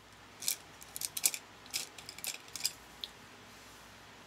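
A quick run of light clicks and clacks, about a dozen over two and a half seconds: small makeup items such as brushes, a mirror or palettes being handled and set down on a table.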